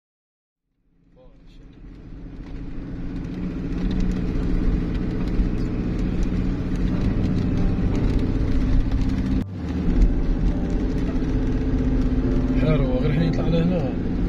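A car driving, its engine and road noise a steady low rumble that fades in over the first few seconds, with a brief drop about halfway through.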